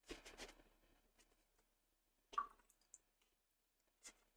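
Faint scuffs of a watercolour brush dabbing wet paint onto paper, followed by a single sharper click a little over two seconds in.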